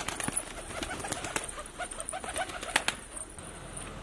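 Domestic Van pigeons cooing in short repeated calls, with a few sharp clicks among them.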